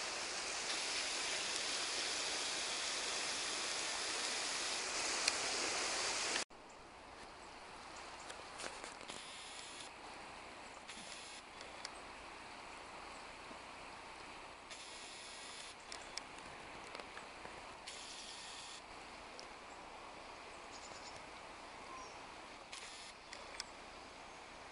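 Steady rush of running river water. About six seconds in it cuts off abruptly and gives way to a quieter, nearer flow of the river with a few short spells of higher hiss.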